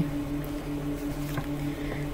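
A steady low hum holding two constant pitches, with no speech over it.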